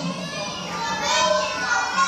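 Children talking in a classroom video played over the lecture room's loudspeakers, several young voices overlapping, with a steady low hum underneath.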